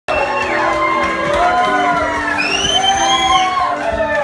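Acoustic guitar playing a song's intro, with audience members whooping and cheering over it.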